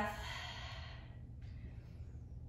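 A woman's long, audible exhale, fading out over about a second, then a fainter breath near the end, as she breathes through a flowing side-reach stretch; a low steady hum sits underneath.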